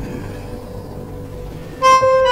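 Background music: a quiet, steady low drone, then a louder held note comes in near the end.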